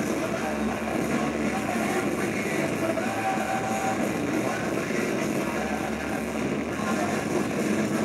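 Live punk rock band playing loudly in a small club with vocals: a dense, steady wall of guitars and drums.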